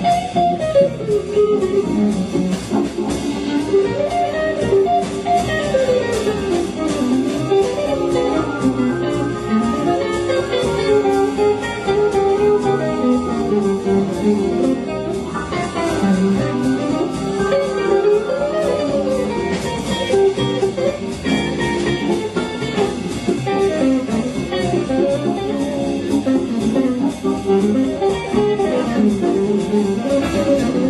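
Live jazz combo: an electric guitar plays a single-note solo line that climbs and falls, backed by upright bass, drums and Hammond organ.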